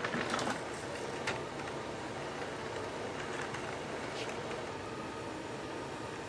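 Motor of a LEGO toy train running steadily, its wheels rolling on plastic track, with a few short clicks.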